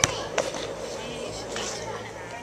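A rubber playground ball bouncing on asphalt: two sharp knocks, the second about half a second in, over faint children's voices.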